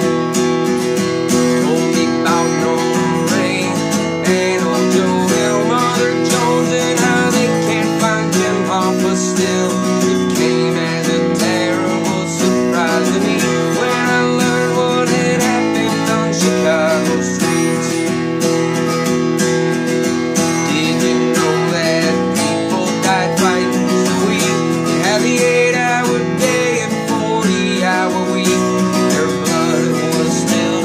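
Crafter acoustic guitar strummed steadily in a regular folk rhythm, an instrumental stretch with no singing.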